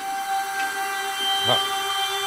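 Background music: a steady synthesizer drone holding a sustained chord.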